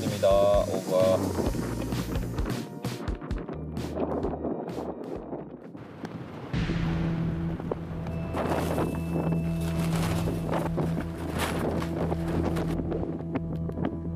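Strong gusting wind buffeting the microphone, with a short burst of voice or laughter in the first second. From about halfway, steady background music with held low tones comes in over the wind.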